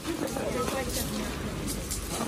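Faint, overlapping voices of several people talking, over a steady low rumble.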